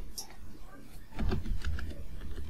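Typing on a computer keyboard: a handful of separate keystroke clicks.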